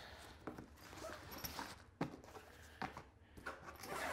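Quiet handling noises as a long cardboard box is lifted and set aside: faint rustling with a few soft knocks. A rasping sound starts near the end as hands work at the top of a padded nylon tripod case, likely its zipper.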